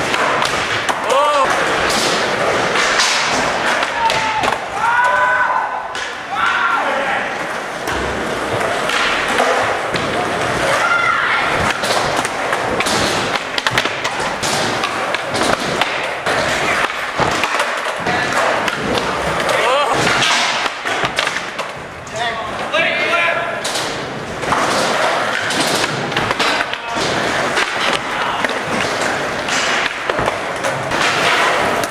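Skateboards rolling on a smooth concrete floor, with repeated sharp pops and thuds of boards snapping and landing as tricks are tried.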